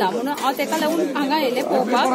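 Speech only: several people talking over one another, a woman's voice in front.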